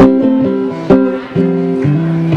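Acoustic guitar strummed in rhythm: a chord at the start, then three more strums about half a second apart from about a second in, each left ringing.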